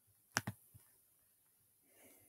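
Two sharp clicks of a computer mouse button a fraction of a second apart, followed by a fainter tap.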